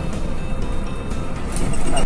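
Steady low rumble of a moving intercity coach, engine and road noise heard from inside the cabin, with music playing along with it.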